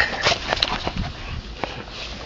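Two dogs playing and scuffling together on grass, with scattered short clicks and taps, irregular and uneven.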